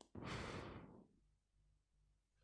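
A person sighing out a long breath close to the microphone, about a second long, dying away.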